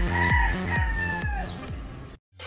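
A rooster crowing once, one long call lasting just over a second that falls in pitch at its end. Background music with a repeating bass line plays underneath and fades out near the end.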